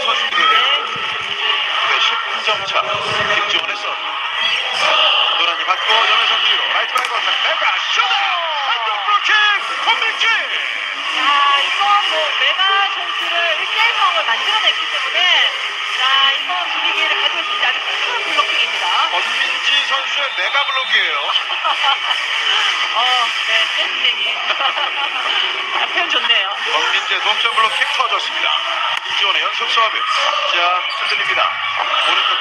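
Arena crowd at a volleyball match: many voices cheering and shouting at once, loud and unbroken.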